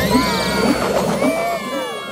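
Cartoon music and sound effects: a tangle of swooping, whistle-like tones that rise and fall, the high ones sliding downward near the end.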